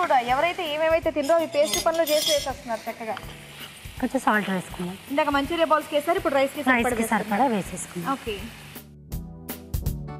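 A woman's voice singing a wavering melody over the faint sizzle of vegetables frying in a pan. Near the end the voice cuts off abruptly into instrumental music with drums.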